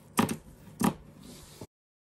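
Pinking shears snipping through coarse jute burlap: two sharp snips well over half a second apart, then the sound cuts off abruptly.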